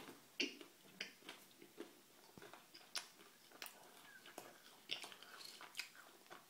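Chewing a mouthful of Cadbury Picnic chocolate bar, made of peanuts, caramel, wafer and rice crisps: faint, irregular crunches, about a dozen, as the crisp wafer and peanuts break between the teeth.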